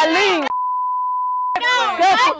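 A single steady censor bleep of about a second, with everything else muted, blanking out a word in a loud argument between women, whose shouting is heard just before and after it.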